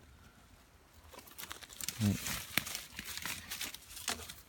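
Dry leaf litter and twigs crackling and rustling irregularly, as from movement through the forest floor, starting about a second in. A short low voice sound comes about two seconds in.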